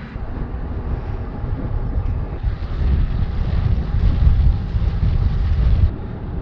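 Wind buffeting the microphone of a bike-mounted camera while cycling: a low rumble that grows louder toward the end.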